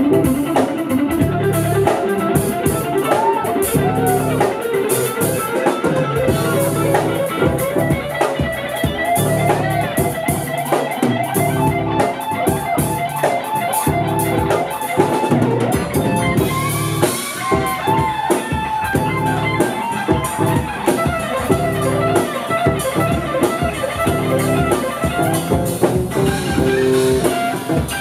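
Live band improvising a bluesy groove: electric guitar over a drum kit, with saxophones joining in.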